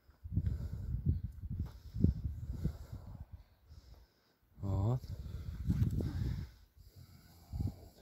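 Rubber boots treading down freshly dug loose soil around a newly planted sapling: a run of soft, dull thumps and crumbling of earth underfoot, with a short vocal sound about five seconds in.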